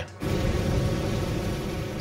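Steady industrial noise of a copper smelter furnace with molten copper pouring amid flames. It starts suddenly a moment in.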